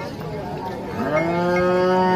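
A cow mooing: one long call that starts about a second in, rises briefly in pitch and is then held.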